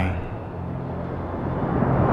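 Low, steady drone of a cinematic film score under a rumbling swell that grows louder toward the end. The end of a drawn-out spoken word fades out at the very start.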